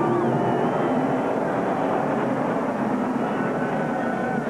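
NASCAR stock car V8 engines running on track after the finish, several steady engine notes over constant background noise.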